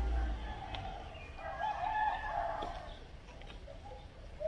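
A rooster crowing once, a drawn-out call from about one and a half to nearly three seconds in. A low rumble fades out in the first half second.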